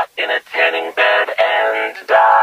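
A comic song sung over music, the voice moving in short, quick syllables.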